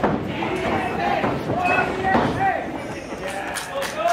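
A few dull thumps of wrestlers' boots on the ring canvas as an elbow tie-up breaks, over scattered voices from the audience.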